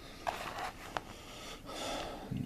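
Faint handling noise with a few small clicks and rustles as a chipboard model is moved on a cutting mat. Near the end there is a breathy intake of air.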